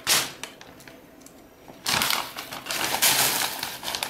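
A bag of 6 mm plastic airsoft BBs being picked up and handled: a sharp knock at the start, then from about halfway a loud, dense rattle of the loose pellets shifting inside the bag for about a second and a half.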